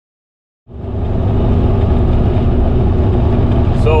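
Semi truck's diesel engine droning steadily with tyre and road noise, heard from inside the cab while driving. It fades in from silence just under a second in.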